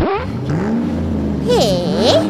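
Car engine revving loudly, its pitch climbing over the first second and then holding steady; a sound that is called annoyingly loud, engine revving 'vroom vroom'.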